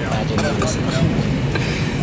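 Airliner cabin during boarding: a steady low cabin rumble with a flight attendant's boarding announcement over the PA and passengers talking.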